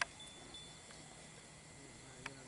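Quiet outdoor background with one sharp click right at the start and a faint, thin high tone that comes and goes during the first half second.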